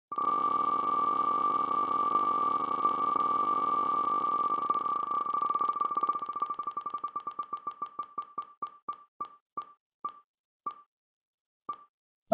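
Computer-generated ticking of an online prize wheel as it spins: at first the ticks come so fast they merge into one steady tone, then they separate and slow down as the wheel loses speed, the last tick falling just before the end as the wheel stops.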